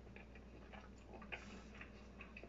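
A person chewing food with the mouth closed: soft, irregular wet clicks from the mouth, quiet overall, with one slightly louder click about halfway through.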